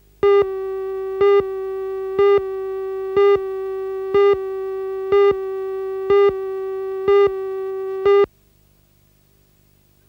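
Electronic line-up tone of a videotape countdown leader: a steady electronic tone with a louder pip every second, nine pips in all. It cuts off suddenly about eight seconds in.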